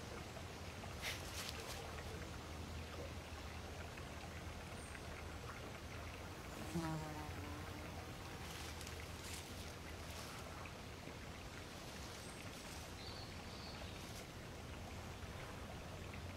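Quiet countryside ambience: a steady soft hiss and low hum with faint insect buzzing and a few faint high chirps and ticks. A brief soft voice-like murmur comes about seven seconds in.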